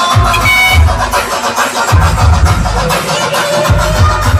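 Loud electronic dance music played through a DJ sound system, with heavy bass that comes in and drops out about every two seconds.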